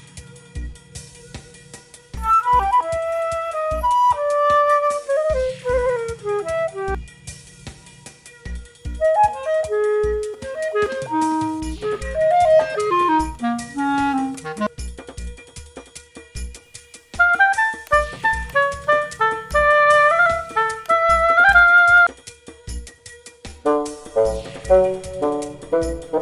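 Woodwind instruments each playing a short melody in turn, with pauses between the phrases, over a steady electronic drum beat and repeating bass line.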